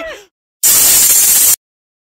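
A loud burst of TV-style static hiss, about a second long, starting and stopping abruptly: a glitch transition sound effect.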